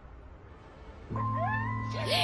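Jackal howling: wavering wails that glide up and down, starting about a second in, over a steady low hum.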